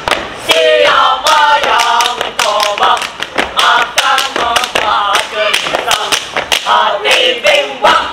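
A group of boys chanting a scout yel-yel cheer in unison, loud, punctuated throughout by many sharp percussive hits from claps and stamps.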